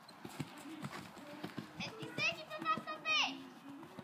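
Hoofbeats of a horse moving on a sand arena, heard as soft irregular thuds. About two seconds in comes a louder high, wavering call, its pitch quivering up and down before it falls away.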